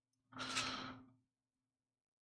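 A person's brief, faint exhale, a soft sigh, about half a second in.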